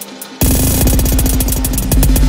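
Live-coded electronic music from TidalCycles: sparse, sharp percussive clicks over a steady low tone, then about half a second in a dense, loud layer of rapid stuttering clicks and heavy bass comes in suddenly.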